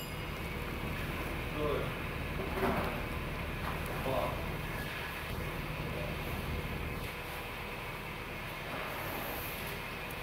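2002 Nissan Frontier's 3.3-litre V6 engine idling steadily, a low even rumble, with a few faint brief sounds over it in the first few seconds.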